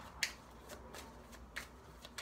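A deck of tarot cards being shuffled by hand, with a few sharp snaps of the cards, the clearest just after the start and again near the end.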